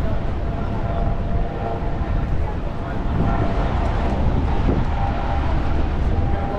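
Busy sidewalk ambience: a steady low rumble with traffic on the road alongside and the faint chatter of passing pedestrians.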